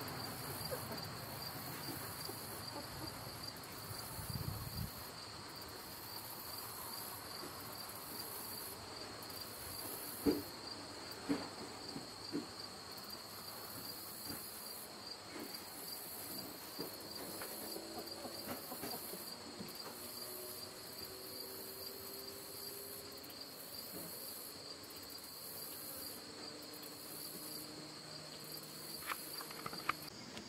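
Insects trilling steadily and high-pitched, with a faint second high buzz that switches on and off every second or so, and a few soft knocks about ten to twelve seconds in.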